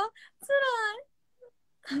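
A young woman's short, drawn-out whiny vocal, a mock wail of complaint with a wavering pitch, lasting about half a second. It comes just under half a second in and is followed by a pause.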